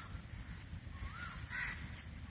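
A bird calling repeatedly, with short calls that rise and then fall in pitch, about three in two seconds, over a steady low outdoor rumble.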